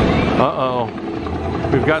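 A steady low rumble with a person's voice over it, briefly about half a second in and again just before the end.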